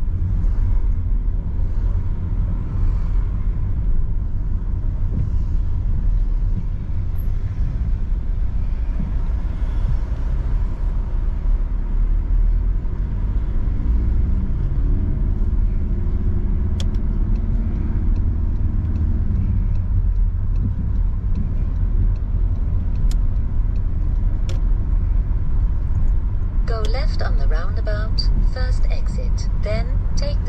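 Steady low rumble of engine and tyres heard inside a moving car's cabin, with the engine note rising and holding for a few seconds around halfway through as the car accelerates.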